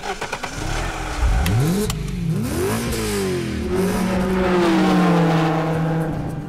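Car engine revving as a produced sound effect under an animated logo: it climbs and falls in pitch several times, then holds a steady note that swells and fades away. Two sharp clicks come about a second and a half and two seconds in.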